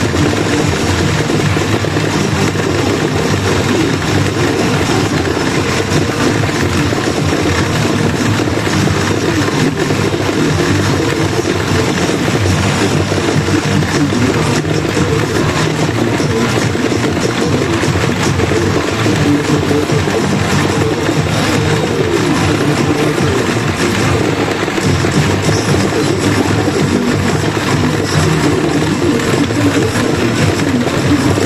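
Pachinko machine playing its loud rush-mode music and effect sounds, marking a winning bonus round, over a steady dense din with no pauses.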